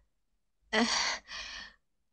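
A woman's heavy sigh of resignation, starting just under a second in: a louder breath out, then a softer trailing one.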